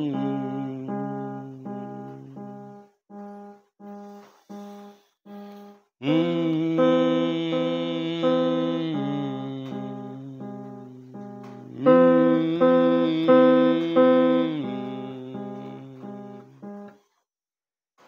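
Piano played slowly: a pattern of repeated single notes, each ringing and fading, with full chords struck about six seconds in and again about twelve seconds in. The playing stops shortly before the end.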